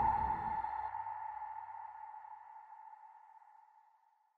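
The final note of an electronic dance track: a single high electronic ping dying away slowly and evenly. It is gone after about three and a half seconds, and a low rumble beneath it fades out within the first second.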